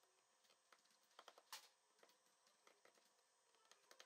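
Near silence, broken by a few faint clicks about a second and a half in, the small screwdriver working on the phone's tiny screws.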